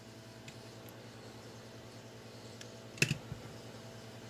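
Small handling clicks and ticks from a fishing hook and line being handled, the sharpest a single click about three seconds in, followed by a few fainter ticks, over a low steady hum.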